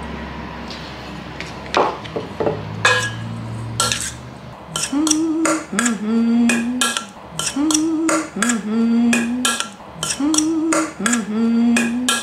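Metal spoon stirring crumbled tofu in a stainless steel mixing bowl, with frequent sharp clinks of the spoon against the bowl. From about halfway, a low two-note tune repeats three times.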